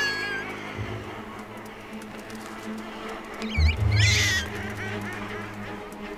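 Documentary music with a low sustained drone, over which a guillemot chick gives high, wavering calls, loudest in a burst about four seconds in.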